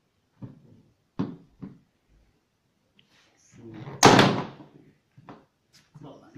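A few light knocks as small tins and bottles are set down on a laminate floor, then one much louder bang about four seconds in that rings out briefly.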